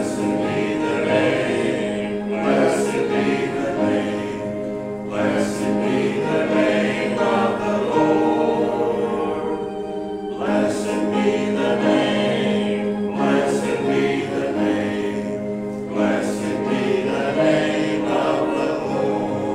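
Congregation singing a hymn in phrases with short breaks between them, over steady held accompaniment tones.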